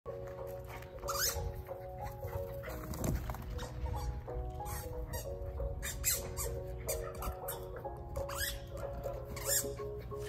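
Background music: a light tune of short, changing notes.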